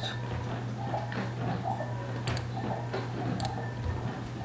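Computer clicks: a few sharp single clicks about a second apart, each placing a healing-brush spot while retouching a photo, over a steady low hum.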